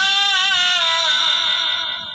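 A singing voice holding one long note with a slight vibrato, trailing off near the end, in a Bengali song.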